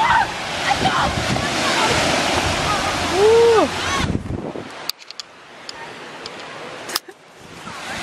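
Beach ambience: a steady rush of surf with voices of people around, which drops off suddenly about four seconds in to a quieter background broken by a couple of sharp clicks.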